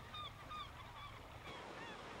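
Seabirds calling in a run of short, falling, honk-like notes, about three a second, growing fainter toward the end.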